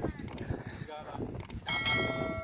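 Sound effects of a YouTube subscribe-button animation: a few sharp mouse clicks, then a bright bell ding near the end that keeps ringing.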